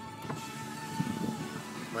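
Music playing inside a car's cabin over the car's running noise as it drives through flood water, with a hiss of water and road noise rising about half a second in.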